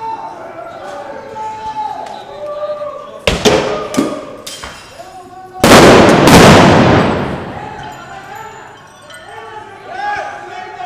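Street riot: people shouting, two or three sharp bangs about three to four seconds in, then a very loud explosive blast a little past halfway that rings out and dies away over about two seconds.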